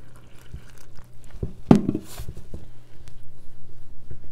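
Flour dough being kneaded by gloved hands in a stainless steel bowl: irregular soft squishes and taps, with one louder knock against the bowl near the middle.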